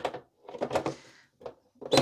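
Metal case cover of a Dell Vostro small-form-factor desktop being set onto the chassis and slid into place: a few light knocks of sheet metal, then a louder clunk near the end as it seats.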